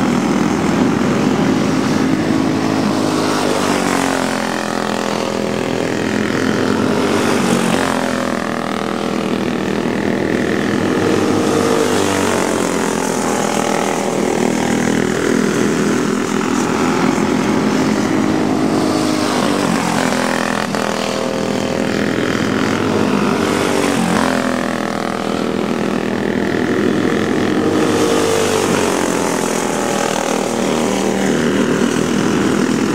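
Racing go-kart engines running hard on a dirt oval. Their pitch repeatedly falls and climbs again as the karts lap the track.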